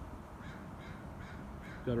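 A bird calling faintly in several short repeated notes, a few a second, over steady outdoor background noise.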